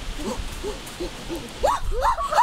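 A boy's voice making short, repeated hoots, about three a second, each rising and falling in pitch; near the end the calls turn higher and steeper.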